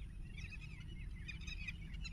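Several faint, high-pitched bird chirps in quick succession over a low, steady background rumble.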